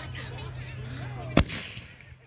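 A ground-launched consumer firework, just lit, fires a single loud, sharp launch shot about one and a half seconds in.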